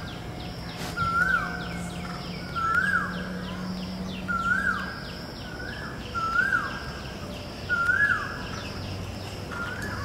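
Birds calling: one bird repeats a short call that rises and then falls, about every second and a half, over a fast, steady series of high chirps from another bird or insect.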